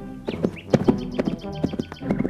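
Hoofbeats of a ridden horse clattering in a quick, uneven rhythm as it approaches, over background music.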